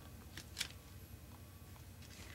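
Faint handling noise of painted paper being moved on a craft table: two short light rustles or taps about half a second in, over a low steady hum.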